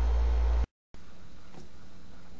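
Steady low electrical hum and hiss. About two-thirds of a second in it drops to dead silence for a moment, then comes back as a quieter hiss with a fainter hum.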